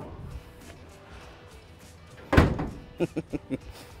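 A single loud slam a little past halfway, typical of a truck's body panel being shut, then a few light knocks, over faint background music.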